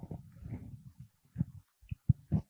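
Faint, irregular rustling with a few soft knocks, from clothing and paper being handled near a lapel microphone.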